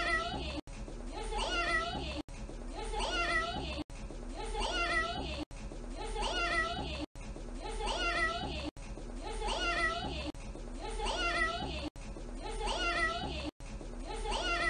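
A toddler saying "meow" in imitation of a cat, one short gliding call per loop of the same clip, repeating about every second and a half with a brief cut at each restart.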